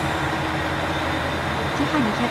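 KiHa 281 series diesel multiple unit idling at a platform: a steady low engine rumble with a held hum.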